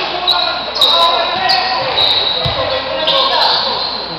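A basketball thudding on a wooden gym court, one clear bounce about two and a half seconds in, in an echoing hall. Players' and spectators' voices and short high-pitched squeaks run throughout.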